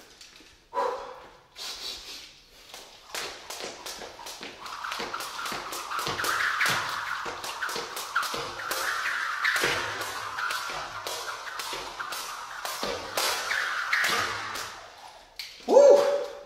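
A jump rope slapping the rubber gym floor on every turn, a quick steady rhythm of about three strikes a second.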